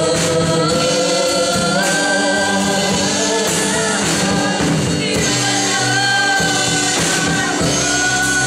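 A gospel worship song: a man singing long held notes into a microphone, with other voices singing along over a musical backing.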